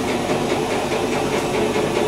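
Steady hissing background noise with a low hum underneath and no distinct events.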